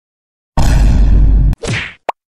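Loud cartoon sound effects in an animation soundtrack: a heavy, noisy hit about half a second in that lasts about a second, followed by a short swish that fades out near the end.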